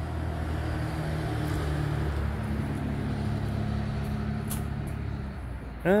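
A motor vehicle's engine running at a steady idle, a low even hum that eases off near the end.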